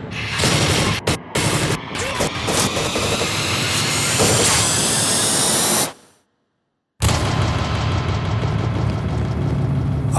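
Film trailer sound design: dense, loud booming noise with a rising swell that cuts off abruptly about six seconds in, a second of silence, then a steady low rumble starts again.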